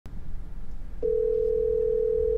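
A telephone ringing tone from an outgoing call: one steady, even tone that starts about halfway in, over a low, steady rumble.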